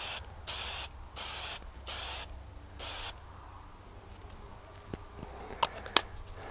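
Aerosol can of cold galvanizing compound sprayed in five short hissing bursts over the first three seconds, laying a light coat on a ceramic tile. Two brief sharp clicks near the end.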